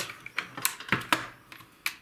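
Several irregular sharp metallic clicks and taps as a muzzle device is worked onto an AKS-74U's threaded barrel, with its spring-loaded detent pin being pressed down by a small tool.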